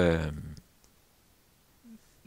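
A man's speaking voice holding a drawn-out word that fades out about half a second in, then a quiet pause with a faint click, and the voice starting again right at the end.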